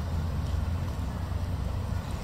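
A steady low rumble with a faint even hiss above it and no distinct events.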